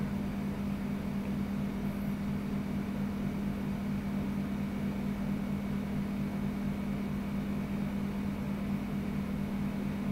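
A steady machine hum with a constant low drone, even throughout, with no hammer blows or knocks.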